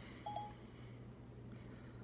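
Two quick, faint electronic beeps of the same pitch from an iPad running Siri, a short moment apart, over a low steady hum.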